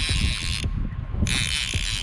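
Fishing reel being cranked to bring in a hooked fish, its gears whirring in two spells with a short pause between, over a dense run of low clicks.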